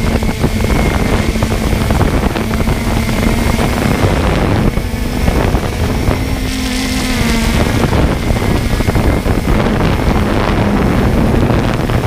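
Small camera drone's propellers buzzing steadily in flight, a continuous hum that wavers slightly in pitch, mixed with rushing wind on the microphone.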